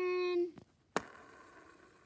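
A short held hum from a voice, then about a second in a sharp click as the plastic arrow of a board-game spinner is flicked. The click is followed by the arrow's fading whir as it spins.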